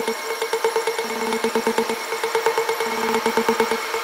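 Techno from a DJ set: a held synth tone over a fast, even pulsing rhythm, with no deep bass until just at the end.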